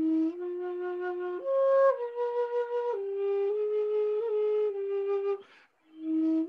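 Solo wooden transverse flute playing a slow melody in long held notes, leaping up about a second and a half in, then stepping back down. The phrase stops a little past five seconds, with a breath audible before the next note begins at the end.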